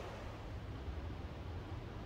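Faint steady hiss with a low hum underneath, with no distinct events.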